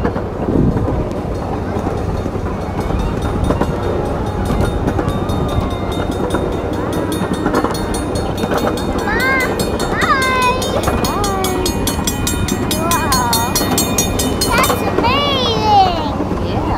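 Miniature ride-on train running along its track, heard from a passenger car: a steady rumble with a fast, regular clicking of the wheels. From about nine seconds in, high children's voices call out over it.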